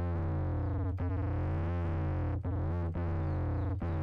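Dirty synth bass from the MPC's Fabric plugin, a note replayed four times over a steady low note. With each note the pitch-enveloped upper layer glides up and then falls back.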